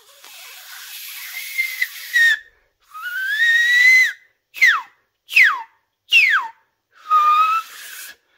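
Beatbox laser whistle made with the lips pulled into the mouth and air forced through a tiny gap between the tongue and the top lip. It starts as a long breathy rush of air with the whistle just catching, then comes a rising whistle, then three quick downward-sweeping laser zaps about a second apart, and finally a short steady whistle.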